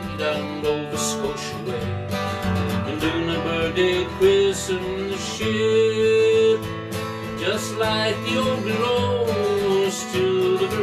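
A man singing a folk song to a strummed acoustic guitar, with a long held note about halfway through.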